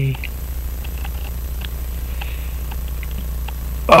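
Steady low hum with a few faint, scattered small clicks of smooth-jawed pliers on a pocket watch's cannon pinion as it is worked to pull it off; the pinion is very tight.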